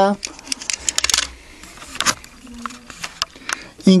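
Handling noise: a run of small clicks and taps as a die-cast toy car is handled, thickest in the first second and a half, with one sharper click about two seconds in and a few lighter ticks after.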